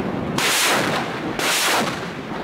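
Truck-mounted multiple rocket launcher firing rockets in quick succession: loud rushing blasts, one starting about a third of a second in and another about a second later.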